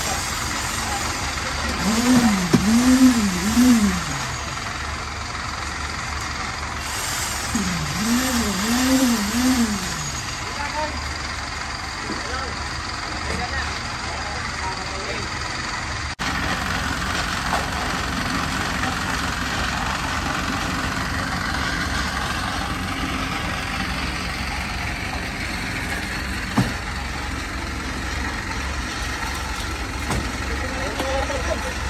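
Engine of a site concrete mixer running steadily through a concrete slab pour, a constant low drone. Twice in the first ten seconds a voice hums a short sing-song phrase over it.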